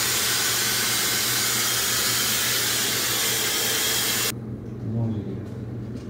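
Dyson Supersonic hair dryer blowing steadily at high speed while drying hair, switched off suddenly about four seconds in.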